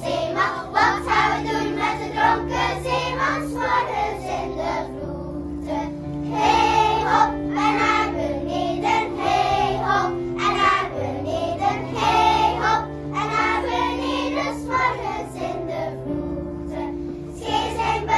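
Children's choir singing together to a keyboard accompaniment of sustained chords, the chords changing every second or two.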